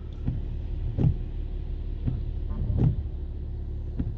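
A car's steady low rumble heard from inside the cabin, with a soft thump roughly every second.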